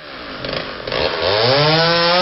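Chainsaw running, its engine pitch rising about a second in and holding high as it revs up.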